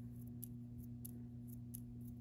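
A few faint light ticks of a coiled paper quilling strip being handled and loosened on a sheet of paper, over a low steady hum.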